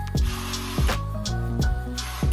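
Background music with a steady drum beat and sustained instrumental tones.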